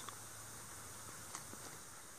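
Faint handling of loose soil as fingers work a buried lump free from the side of a hole, with a couple of small ticks over a steady low hiss.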